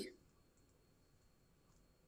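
Near silence: room tone, as the last word trails off at the very start.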